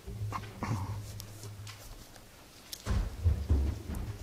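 Footsteps and low thumps of people stepping up onto a platform, loudest about three seconds in, over a steady low hum.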